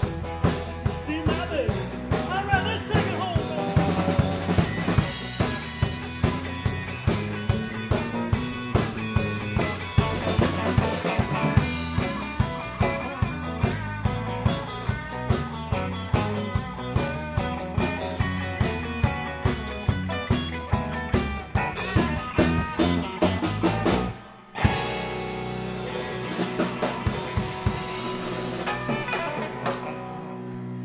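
A live blues-rock band plays, with an electric guitar lead over a drum kit keeping a steady beat. About 24 seconds in the music breaks off sharply for a moment, then a held, ringing ending follows.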